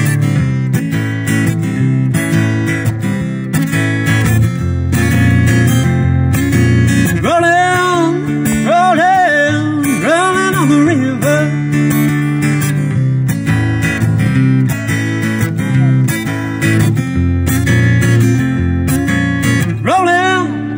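Acoustic guitar strummed in a steady rhythm, an instrumental stretch between sung lines.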